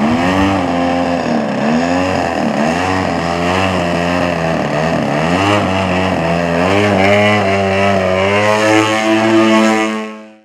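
GP61 gas engine of a large RC aerobatic plane running with its propeller, the pitch rising and falling again and again as the throttle or the plane's passes change.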